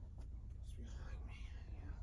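Quiet indoor room tone: a steady low hum with faint, indistinct voices murmuring in the background.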